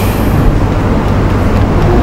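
Steady, loud low-pitched rumbling background noise with no speech.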